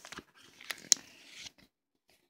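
A package being pried open by hand: rustling and crinkling, with two sharp snaps just under a second in, the second one loud.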